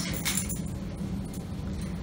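Foundation paper rustling briefly as it is handled and slid into place on a sewing machine bed, over a steady low hum.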